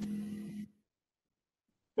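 Faint steady hum and hiss from an open video-call microphone, fading slightly and then cut off abruptly well under a second in, followed by dead digital silence.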